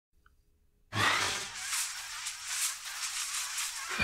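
Logo sting sound effect: a rushing, hissing whoosh that starts suddenly about a second in with a low thump, swells and eases, and ends with a second low thump just as it cuts off.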